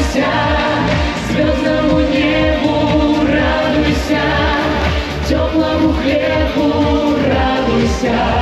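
Pop song from a vocal ensemble: several voices singing held notes over a backing track with a steady beat.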